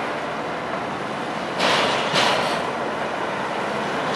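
Studebaker pickup being unloaded down the steel ramps of a car-carrier trailer: a steady mechanical vehicle rumble, with two short hisses about a second and a half and two seconds in.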